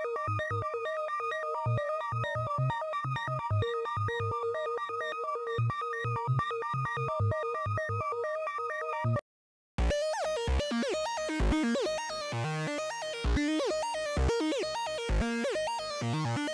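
Kairatune software synthesizer playing preset demos. A repeating picked synth pattern (Soft Pick preset) over regular low pulses stops about nine seconds in. After a brief gap, a second preset (Zappy Kickback Bass) starts with pitch-gliding notes over deep bass hits.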